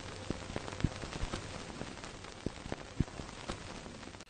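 Old-film crackle under an intro logo: a steady hiss with scattered, irregular pops and clicks.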